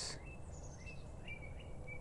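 Faint outdoor background noise with a bird chirping in short high notes, several times.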